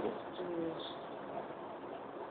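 A bird cooing briefly, a short low call about half a second in, faint behind a steady hiss.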